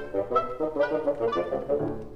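Orchestral light music: a brisk passage of short, quick notes on woodwinds and brass.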